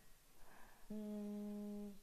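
A woman humming one steady, level 'mmm' at a constant pitch, starting about a second in and lasting about a second.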